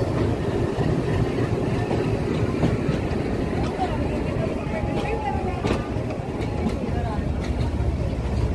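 Freight train of covered car-carrier wagons rolling past close by: a steady loud rumble of wheels on rails, with sharp clicks now and then as the wheels cross rail joints.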